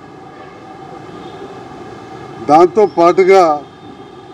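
A man's speech: a pause of about two and a half seconds filled only by a faint steady background hum, then he speaks again for about a second near the end.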